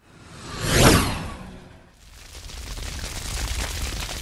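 A whoosh sound effect swells to a peak about a second in and dies away. About two seconds in, a steady crackling noise of a fire sound effect comes in and slowly grows.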